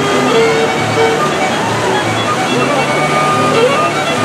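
Whitewater rushing steadily through a river-raft ride's concrete rapids channel, with music of held notes playing over it.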